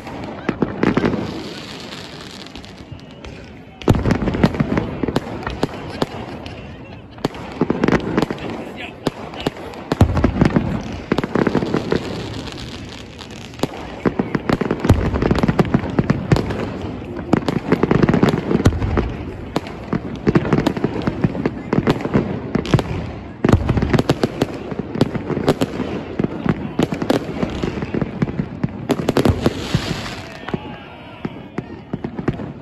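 Fireworks display: a dense, continuous barrage of bangs, pops and crackles from bursting aerial shells, swelling in waves every few seconds.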